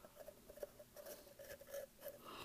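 Faint, irregular scratching and rustling of fingers working a rolled paper certificate out of a packaging tube.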